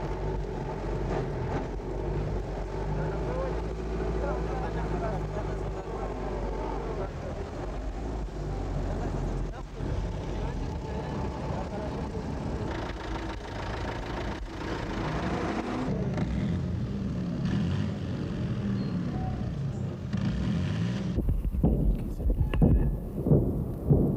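A motor vehicle's engine running steadily, with people's voices over it; the engine drops back about seven seconds in and comes up again later.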